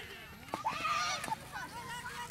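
Children shouting and calling out during a game of street cricket, loudest about half a second to a second in, with two short sharp knocks among the shouts.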